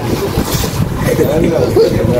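People's voices: talk and chatter that the recogniser did not write down, over the steady background noise of a busy shop.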